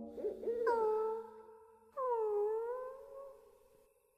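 Two drawn-out, wavering cries from a cartoon voice, each about a second and a half long; the second dips in pitch and then rises again.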